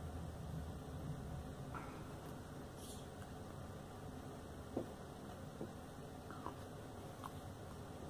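Quiet room with a few faint, short clicks and mouth sounds as beer is sipped from a glass, swallowed, and the glass lowered to the wooden table.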